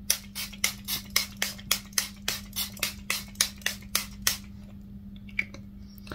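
Small pump-spray bottle of facial mist being spritzed rapidly, about four short sprays a second, for a little over four seconds before stopping.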